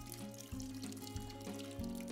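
Water pouring and dripping off a papermaking mould's screen as it is lifted out of a vat of paper pulp, under soft background music with sustained notes.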